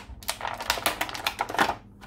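Clear plastic blister tray clicking and crackling irregularly as an action figure is pried out of it.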